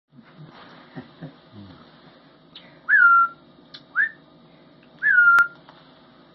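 A young hawk gives three thin whistled calls, each sweeping up quickly and then holding a level pitch; the first and last are about half a second long and the middle one is short. These fit food-begging while it is being fed. A sharp click comes near the end of the last call.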